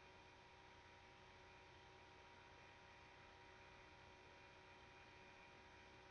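Near silence: a faint steady hum and hiss of the recording.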